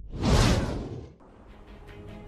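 A whoosh sound effect for an animated title card, swelling up and dying away within about a second.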